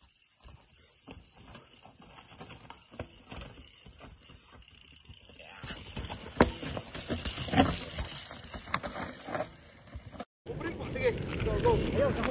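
Mountain bike rolling down a steep rock bed: irregular knocks and rattles of tyres and frame over rock. They start faint and grow busier and louder from about halfway, then break off abruptly near the end into a louder stretch.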